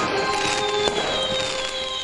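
Sound effect of crackling, fizzing sparks with a thin whistle that slowly falls in pitch, over background music.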